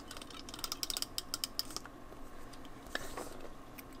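A quick run of small, sharp clicks and crackles from paper strips and tools being handled on a craft table. A few more clicks come about three seconds in.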